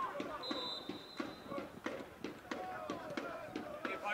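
Faint shouts of players and spectators at a football ground, with a single steady whistle blast of about a second starting half a second in: a referee's whistle signalling the free kick.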